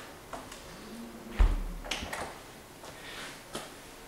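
Apartment door closing with a soft low thud about a second and a half in, a swoosh rather than a bang, followed by a few light clicks.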